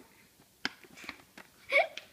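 Hands handling a paper gift bag: a sharp tap a little over half a second in, then light rustles. Near the end comes a short voiced sound with a rising pitch, a brief exclamation.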